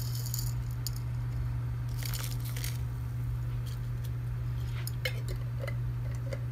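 Liquid bubbling in a frying pan on the stove, crackling and spitting in short scattered bursts over a steady low hum. Another few clicks come near the end as chopped pieces go into the pan.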